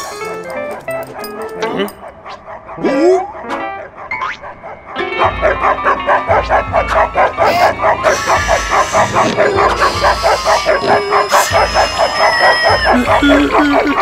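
Cartoon dog barking and growling over cartoon music, quieter and broken up at first, then rapid repeated barks from about five seconds in.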